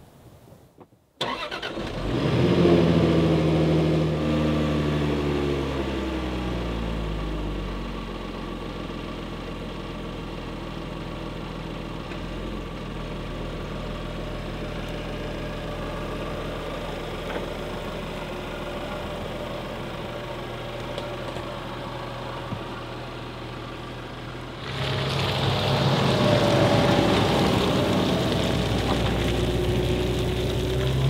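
A Land Rover Discovery 5's engine starts about a second in, revs up briefly and settles into a steady idle. Near the end it revs up again as the vehicle pulls away.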